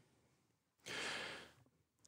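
A man's sigh: one breathy exhale close to the microphone, about a second in, lasting about half a second.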